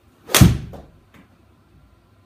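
A 6-iron striking a golf ball off a hitting mat, the ball driven straight into a golf simulator's impact screen: one sharp smack about a third of a second in, with a short ring-out. The shot is a low punch swing, played with the ball back in the stance and no wrist hinge.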